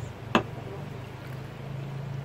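A single sharp click about a third of a second in, over a steady low hum.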